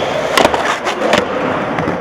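Skateboard wheels rolling on a concrete skatepark floor, with two sharp clacks of the board, about half a second and just over a second in.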